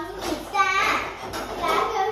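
A child's high-pitched voice, vocalizing in short bursts with no clear words.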